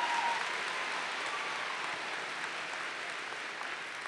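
A large crowd applauding, the clapping slowly dying away.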